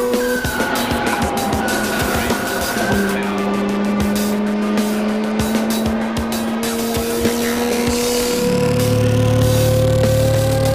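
Mazda RX-8's two-rotor Renesis rotary engine, heard from inside the cabin, running hard at high revs. Its pitch drops slightly about three seconds in, then rises steadily through the second half as the car accelerates, and a deeper rumble joins near the end.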